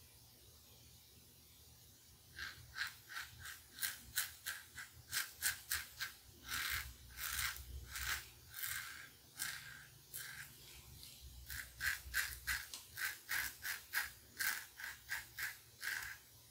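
Merkur 34C double-edge safety razor with a Voskhod blade cutting two days' stubble through lather: short scraping strokes, several a second, starting a couple of seconds in, with a few longer strokes in the middle.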